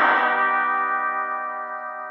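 An electric guitar chord ringing out and slowly fading, with a bright, bell-like tone.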